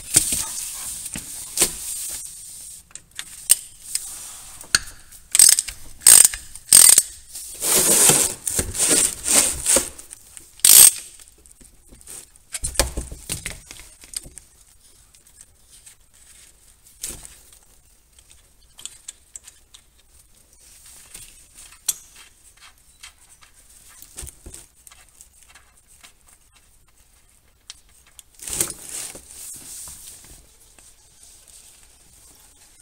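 A ratchet clicking as it loosens the 17 mm hex drain plug of a VW 02J five-speed manual transmission, loudest in a quick run of clicks a few seconds in, then light metallic ticks and clinks as the plug is turned out by hand. Near the end, a short rush as the gear oil begins to pour out.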